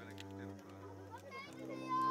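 Children's voices chattering and calling out, over steady low sustained tones.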